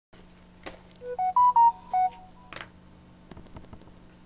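A short electronic chime of five quick beeps, rising then falling in pitch, framed by a click just before and another just after, over a steady low hum.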